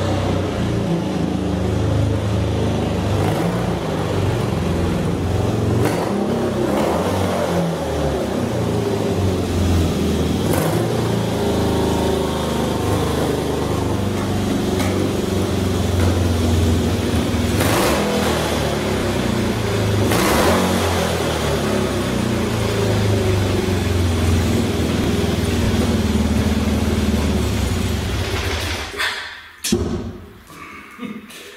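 BMW airhead flat-twin motorcycle engine running at idle with several throttle blips, then shut off near the end. It is slow to come back down off the throttle, so the carburetion still needs work.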